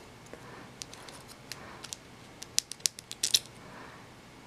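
Handling noise from a small camcorder circuit board turned in the fingers: a run of small, sharp clicks and scratches of fingertips and nails on the board and its parts. The clicks start about a second in and come thickest in a quick cluster near three seconds.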